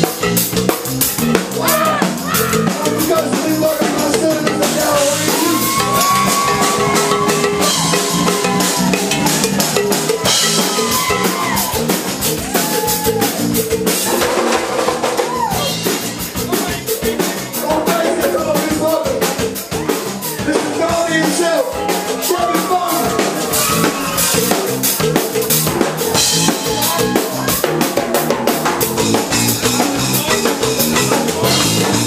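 Live Cajun-zydeco rock band playing, the drum kit prominent with steady hits, with bass and a melodic lead line over it.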